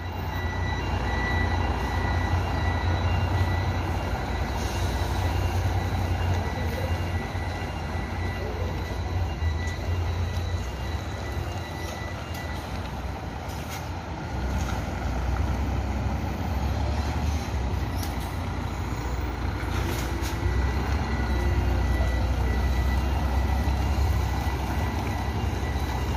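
Scania K420 rear-engined coach pulling away and turning: a deep, steady engine rumble that grows louder about halfway through as it accelerates.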